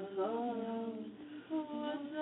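A woman singing a slow ballad melody unaccompanied, holding long, sustained notes, with a brief break for breath about one and a half seconds in before the next phrase begins.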